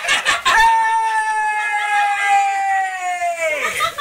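A person's long drawn-out cheering yell, held on one high pitch for about three seconds and then sliding down at the end. It follows a brief burst of noisy voices at the start.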